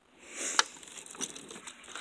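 A glass pickle jar set down among groceries, with one sharp knock about half a second in, amid soft rustling and crinkling of the groceries being handled.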